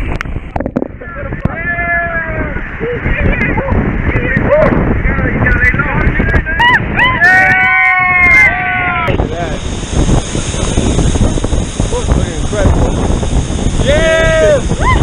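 A waterfall pouring down close to the microphone, a heavy steady rush of water with spray hitting the camera. Over it, several people whoop and shout without words under the falls.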